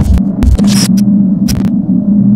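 A loud, steady electrical buzz with short crackles and bursts of static scattered through it: a digital glitch sound effect.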